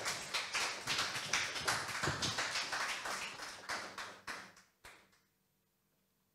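Small audience applauding with steady hand claps, thinning out and dying away about five seconds in with a couple of last single claps.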